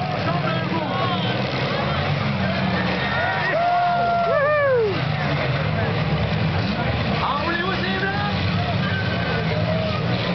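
Several V6 demolition-derby cars' engines running and revving in a steady low drone as they push and ram each other, with a crowd's voices and shouts over them. A long falling pitched sweep cuts through about four seconds in.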